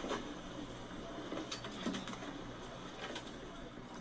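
Faint, steady open-air noise from a phone video filmed aboard a small boat at sea, with a few faint knocks and indistinct voices.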